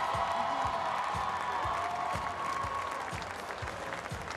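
Arena crowd applauding steadily as a player steps forward to collect her medal, with music and a low thump about twice a second underneath.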